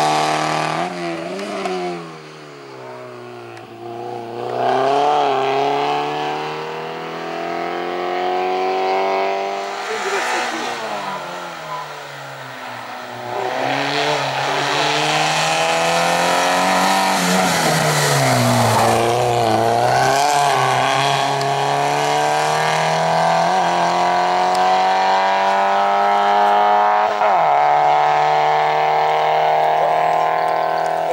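Small hatchback slalom race car's engine revving hard. Its pitch drops and climbs again several times as the car slows for and accelerates out of the cone chicanes. A long climbing pull comes in the second half, with a quick gear change near the end.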